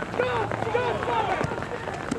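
Several voices shouting and calling over one another during a football attack.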